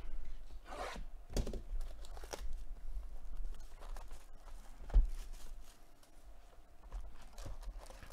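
The sealed wrapping of a cardboard trading-card hobby box being torn open in several rough rips, then the box handled and opened, with a sharp knock about five seconds in.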